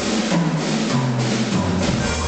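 Solo drum kit (Mapex) being played: a quick run of strokes over a constant wash of cymbals, the tom notes stepping down from a higher to a lower tom, with the bass drum coming back in near the end.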